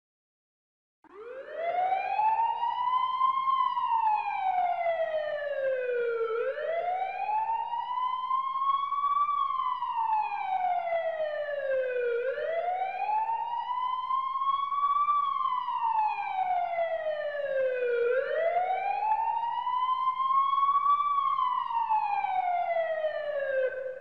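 An emergency siren wailing: slow, steady rises and falls in pitch, about one cycle every six seconds, four times over. It starts about a second in and cuts off at the end.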